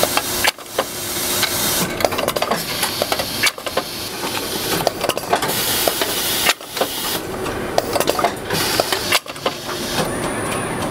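Tucker TR 610 stud welding head at work: a constant hiss laced with rapid sharp clicks and crackles as studs are fed and welded. The sound cuts out sharply four times, about every three seconds.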